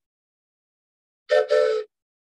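Toy train whistle blown in a quick double blast, two short, steady-pitched chord tones about a second in.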